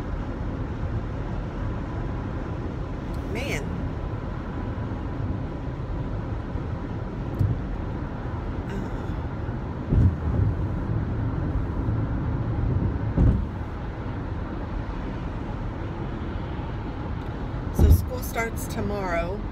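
Steady low rumble of tyre and engine noise inside a car cabin at highway speed, with a couple of dull thumps in the second half.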